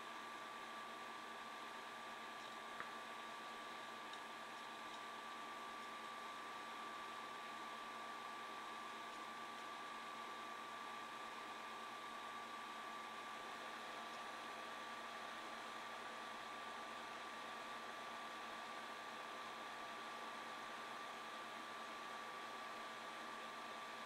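Faint, steady hiss with a thin, steady whine and one tiny tick about three seconds in: room tone and recording noise, with no other sound.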